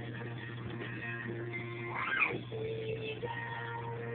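Music with guitar playing in the room, over a steady low hum. About two seconds in, a short high cry rises and falls.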